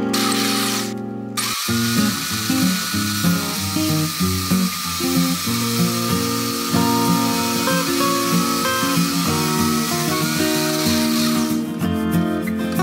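Electric drill motor in a homemade drill press running with a steady high whine, under acoustic guitar background music. It cuts out briefly about a second in, starts again, and stops near the end.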